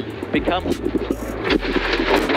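Subaru rally car's engine running hard, heard from inside the cabin, with a voice and background music over it.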